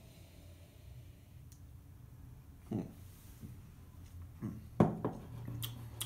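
A stemmed beer glass set down on a table: one sharp glass knock about five seconds in, in an otherwise quiet room, with a short appreciative "mm" shortly before it.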